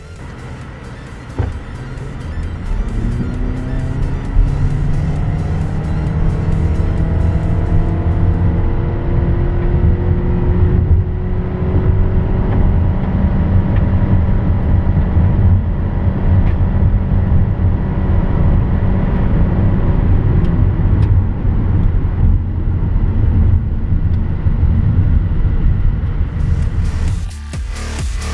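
Toyota Camry Hybrid accelerating hard, heard from inside the cabin. A whine climbs slowly in pitch for about ten seconds over the steady drone of the 2.5-litre four-cylinder engine held at high revs, which goes on until near the end.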